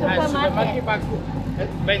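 Voices talking during the first second, over a steady low rumble of street traffic.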